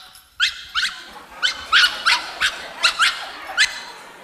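Small dog yapping rapidly: a string of about ten short, high-pitched yaps, two to three a second, each rising sharply in pitch.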